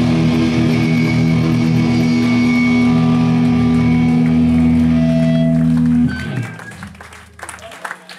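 Live hardcore punk band holding a loud ringing chord on electric guitar and bass. The chord cuts off about six seconds in, and a low bass note fades out a moment later, ending the song.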